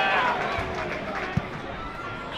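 Football match heard from pitch level: a player's shout at the start, then a single thud of the ball being kicked about one and a half seconds in.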